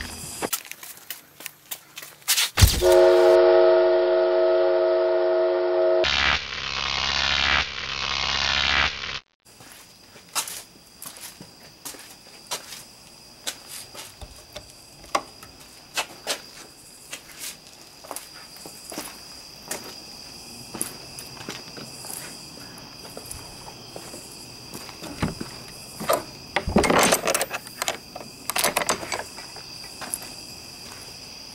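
A loud horn-like blast of several held tones, starting a few seconds in and lasting about six seconds, then cutting off abruptly. Crickets chirp steadily after it, with footsteps and light clicks.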